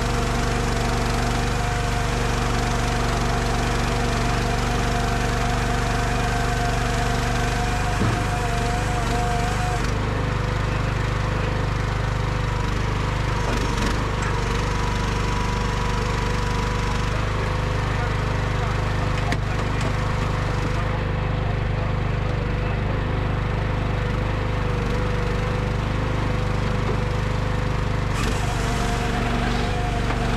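Firewood processor's engine running steadily while the machine works a log on its infeed deck, with a single knock about eight seconds in.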